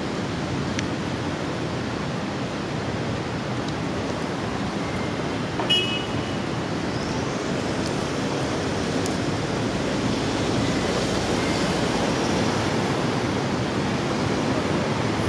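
Steady rush-hour city traffic: cars and engines running along a wide avenue, with the noise growing a little louder in the second half as vehicles pass close by. A brief high beep sounds about six seconds in.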